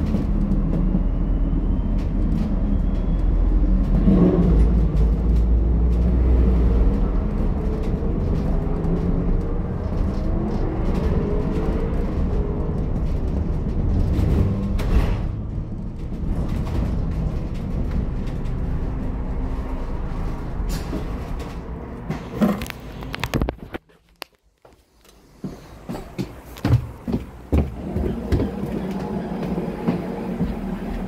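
Interior sound of an ADL Enviro400H MMC hybrid double-decker bus with BAE hybrid drive: a loud low rumble with a motor whine that rises and falls as the bus moves at low speed. About three quarters of the way through the sound drops briefly to near quiet, followed by a few knocks.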